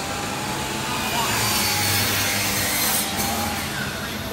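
Power saw cutting through lumber: a steady cutting noise that swells for about three seconds and stops abruptly near the end.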